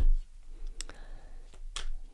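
A deck of tarot cards shuffled by hand: soft rustling of the cards, with two sharp card clicks about a second apart.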